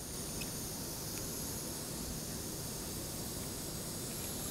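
Steady, faint background hiss of room noise with no distinct event.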